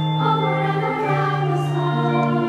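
Church choir singing an anthem in long held chords, accompanied by a pipe organ.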